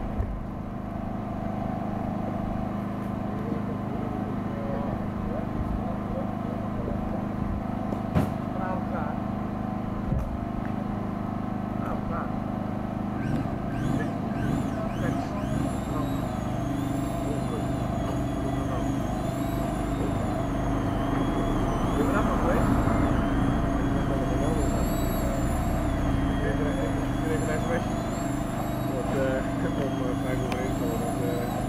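Mobile crane's diesel engine running steadily while it holds a concrete ramp element aloft, a little louder from about halfway. From about halfway a high, wavering whine joins in, with a few sharp clicks earlier on.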